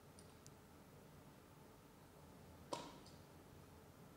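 Near-silent room tone with small metal clicks as a circlip is worked into a shearing handpiece's barrel: two faint ticks near the start and one sharp click a little before three seconds, with a brief ring after it.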